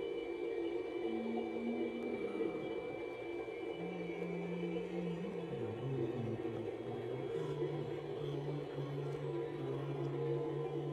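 Slow, dark drone music: long low tones that slide slowly downward and settle into one held tone, over a steady hum, with echo.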